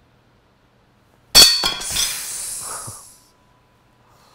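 A cast-iron well-pump handle snapping under a finger strike: one sharp crack with a metallic ring about a second in, followed by a few more clinks and a rattle that dies away.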